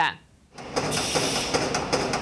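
Sausage production-line machinery in a meat plant running with a steady, dense mechanical noise, starting about half a second in.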